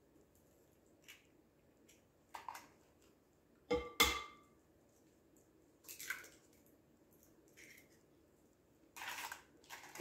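Eggs being cracked one at a time against a glass stand-mixer bowl: a few scattered taps and clinks, the loudest about four seconds in with a short glassy ring, and soft rustles of shell between.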